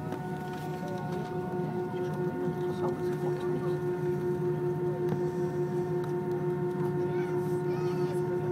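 Airbus airliner's jet engines running at steady taxi thrust, heard inside the cabin: a constant low rumble with several steady whining tones on top, not spooling up.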